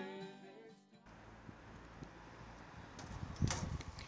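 The last chord of a song with acoustic guitar rings out and fades away over the first second. After an abrupt change it gives way to faint, steady outdoor background noise, with a few soft clicks near the end.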